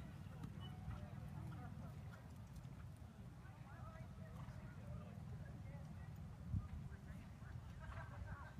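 Indistinct murmur of nearby spectators' voices over a steady low rumble, with a single thump about six and a half seconds in.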